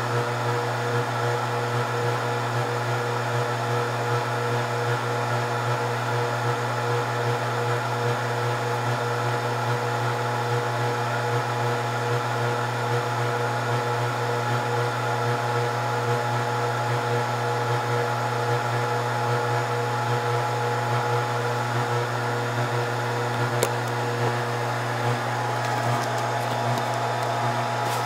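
Scotle IR360 BGA rework station running a reflow profile in its preheat stage: the hot-air blower and cooling fans give a steady whir over a low hum, with a faint click near the end.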